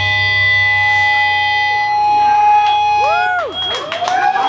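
Live rock band's final chord ringing out through the guitar amplifiers, with many steady sustained notes; the low bass and drum pulse drops away about two seconds in. Near the end, high sliding tones rise and fall over the dying chord.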